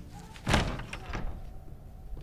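A door banging shut about half a second in, followed by a lighter knock.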